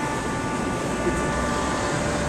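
Steady background drone of city traffic and machinery, with a faint, steady whine above it.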